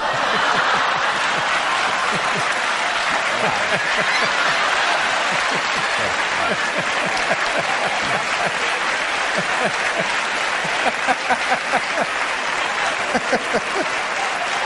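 Studio audience applauding, starting suddenly and holding steady, then thinning into separate distinct claps near the end.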